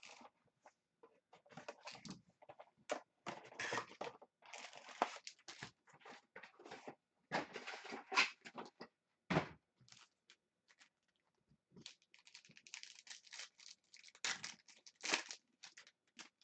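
Trading card box being cut open with a box cutter and its packs handled and set down, a low thump about nine seconds in. In the last few seconds a card pack's plastic wrapper crinkles and tears open.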